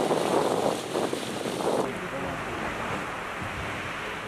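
Wind on the microphone and sea noise recorded out on the water, cutting off sharply a little under halfway through. After the cut comes a quieter, steady wash of sea.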